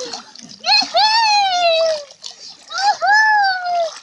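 A small child crying in two long, high wails about a second apart, while the water around it splashes.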